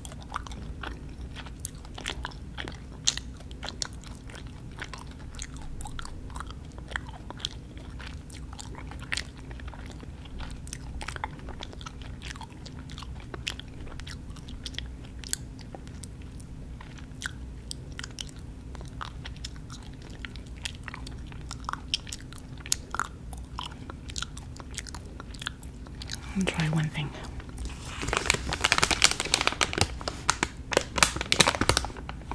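Close-miked chewing of sour gummy worms: scattered mouth clicks and smacks over a steady low hum. About two seconds before the end, the plastic candy bag crinkles loudly.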